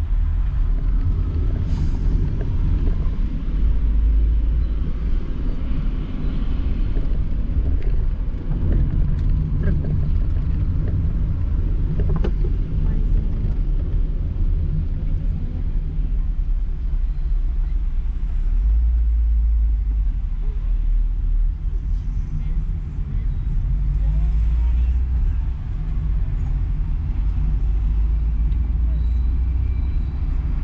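Low, steady rumble of a car's engine and tyres heard from inside the cabin while driving in city traffic, swelling and easing slightly as it goes.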